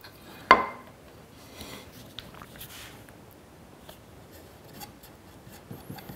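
A small glue-spreading stick scraping and rubbing faintly against the inside walls of a wooden mortise as glue is spread in an even coat. A single sharp knock with a short ring comes about half a second in, the loudest sound.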